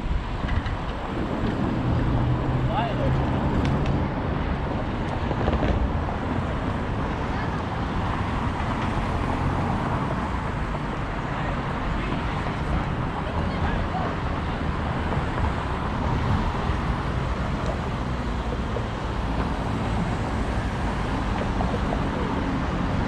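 Steady city street noise heard from a moving bicycle: car traffic passing through intersections, with wind on the microphone.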